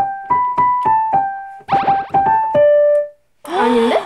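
A digital piano played with single notes at an even pace, a quick run of notes about halfway, and a held note that stops about three seconds in. A vocal gasp follows near the end.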